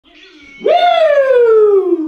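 A man's long, loud celebratory yell that starts about half a second in, high in pitch, and slides steadily down for more than a second, after a quieter low murmur.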